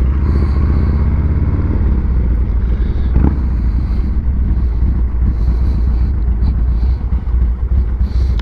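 Motorcycle engine running low and steady as the bike rolls slowly at low speed, with a brief knock about three seconds in.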